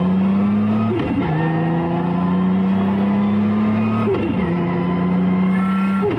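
Nissan Skyline R32's engine accelerating under load, heard from inside the cabin. It upshifts twice through a sequential gearbox, about a second in and about four seconds in; each shift drops the pitch quickly before it climbs again.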